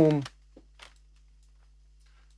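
One spoken word at the start, then near-silent room tone with a faint steady hum and two faint computer mouse clicks.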